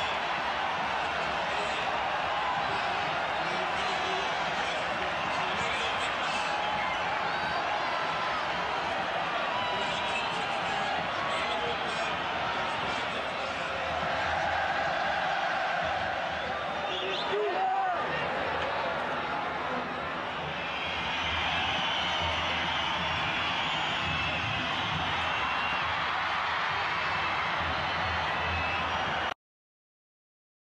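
Large football stadium crowd cheering, a dense, steady wash of many voices, with a short break about seventeen seconds in.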